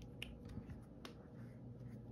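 A few faint, sharp clicks in the first second from a small plastic paint bottle being handled and uncapped, over quiet room tone.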